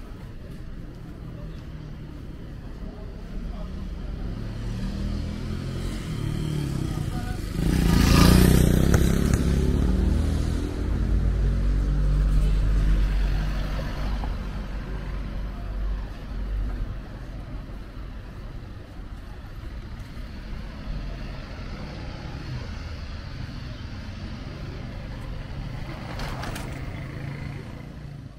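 Town street traffic noise. A motor vehicle passes close by about eight seconds in, and its low engine rumble lasts for several seconds after it.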